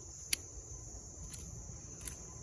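Hand pruning shears snipping the tips off yellow apricot (mai vàng) shoots: one sharp snip about a third of a second in and a fainter click a second later. Under it runs a steady, high-pitched insect chirring.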